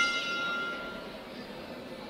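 Boxing ring bell struck once, its ring fading out over about a second: the signal that ends the round.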